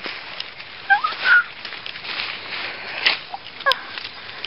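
Tall reed stems rustling and swishing as someone pushes through them, with a couple of short high squeaks about a second in and again near the end.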